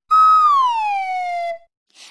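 A cartoon whistle sound effect: one tone that slides steadily down in pitch for about a second and a half, then cuts off.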